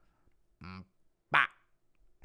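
Only speech: a man speaking slowly in a put-on impression voice, two short separate syllables with pauses around them, the second a sharp, loud "but".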